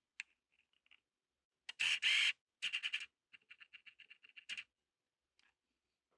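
Camera shutter firing in quick bursts. A lone click comes first, then a loud cluster of clicks about two seconds in, then a run of fast, even clicks at about seven or eight a second that ends with a louder burst.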